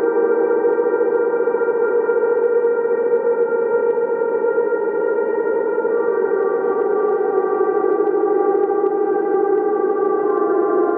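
Ambient drone music: a chord of sustained tones with echo, steady throughout, with some notes changing about six seconds in.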